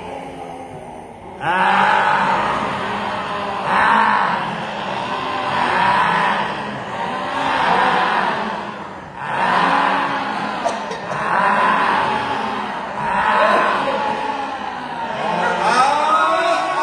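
A man's loud, open-mouthed vocal cries during a yoga breathing exercise. They start about a second and a half in and repeat in a rhythm of roughly one every two seconds.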